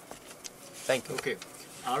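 Radio talk-show speech with a pause of about a second, one short word just under a second in, and talk resuming near the end.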